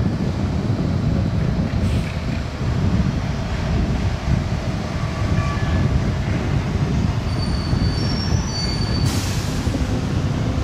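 Gillig BRT transit bus approaching at low speed with a loud, steady low rumble. Near the end a brief high squeal, typical of brakes as it slows, is followed by a short hiss.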